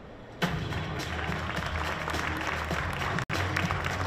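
An audience applauding over music, starting about half a second in after a brief lull. The sound drops out for an instant a little past three seconds.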